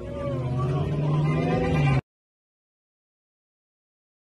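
Car engine pulling away, a low drone that grows louder and rises slightly in pitch. It cuts off abruptly about halfway through, leaving dead silence.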